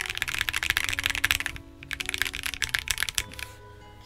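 Fast typing on a CIY GAS67 gasket-mount mechanical keyboard: a quick run of key clacks, a brief pause about a second and a half in, then a second run that stops shortly before the end.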